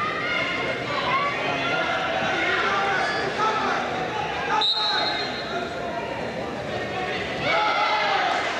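Several voices shouting over one another in a large, echoing gym hall, the calls of coaches and spectators at a wrestling mat. About halfway through comes a short, steady whistle blast.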